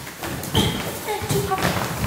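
Interlocking foam floor mats being flung and dropped onto a concrete floor in quick succession, a rapid run of soft, irregular thuds and slaps.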